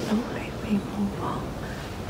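Soft whispering and brief murmured voice fragments over steady room noise.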